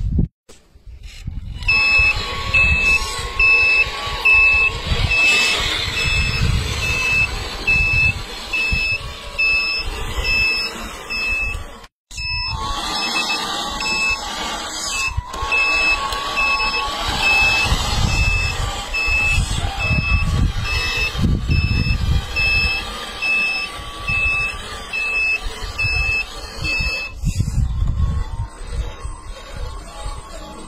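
Radio-controlled Scania-style tractor-trailer truck reversing, its sound unit giving a reversing-warning beep about twice a second over a steady engine hum, with low rumbling from the truck moving over the rubble. The beeping breaks off briefly once and stops near the end.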